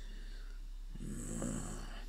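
A short, quiet, breathy vocal sound, a rough exhale, about a second in, over a steady low electrical hum.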